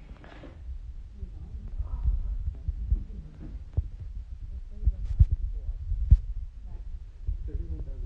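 Handling noise on a phone's microphone: an uneven low rumble with several sharp knocks, the loudest about five and six seconds in.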